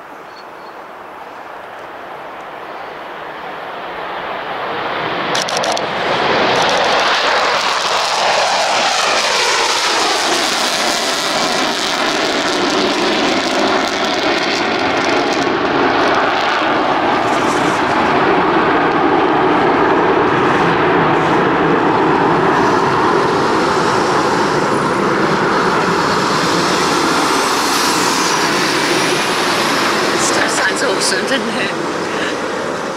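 Jet roar of a B-1B Lancer bomber's four turbofan engines on departure: it builds over the first six seconds, a whine glides down in pitch as the aircraft passes, and a loud steady roar carries on.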